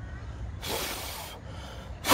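A person blowing a puff of breath across a small camera's screen to blow water drops off it: one breathy rush of air starting about half a second in and lasting just under a second.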